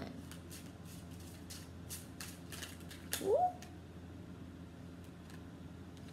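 Oracle cards being shuffled and handled, a series of soft clicks and flicks of card stock. About three seconds in, a woman gives a short rising "ooh" as she looks at a card.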